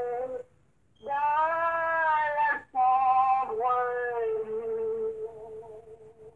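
A voice singing long, held notes, with a short break about half a second in. A final long note is held from a little past the middle and fades away near the end.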